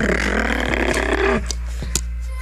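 A girl's long, breathy sigh lasting about a second and a half, over steady background music.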